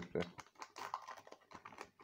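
Trading cards being handled and flicked through by hand: a quick, irregular run of faint light clicks and taps.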